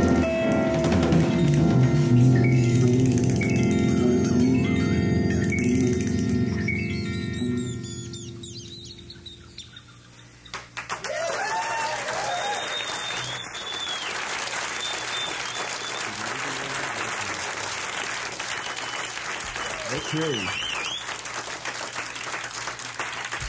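Live band music, heard off an FM broadcast taped to cassette, ends with long held chords that die away over about eight seconds. About halfway through, an audience breaks into applause, cheering and whistles.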